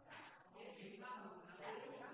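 Quiet room tone with faint, indistinct background voices.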